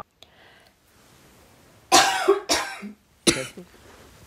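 A person coughing three times: two coughs close together about two seconds in, then a third a moment later.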